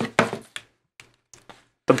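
A handful of light knocks and taps, the loudest near the start, as a handheld digital multimeter and its test probes are handled and set against a tabletop.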